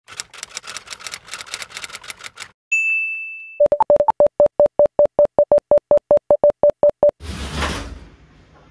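Title-card sound effects: typewriter keys clacking rapidly, then a single bell-like ding. A quick string of short, even beeps follows at about six a second, and a brief burst of static hiss comes just before the end.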